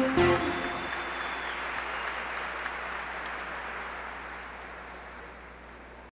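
The last sung note and band chord of a live song end about half a second in, followed by audience applause that fades steadily away.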